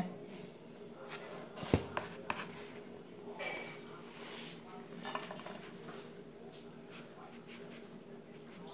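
Quiet kitchen handling sounds of a metal spoon and cookware: scrapes and light clinks as moistened tapioca starch is worked in a plastic bowl and a frying pan is handled on the stove, with one sharp clink a little under two seconds in. A steady low hum runs underneath.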